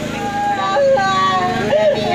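A woman's voice in long, held, wavering notes, like a wailing lament, over a steady low hum.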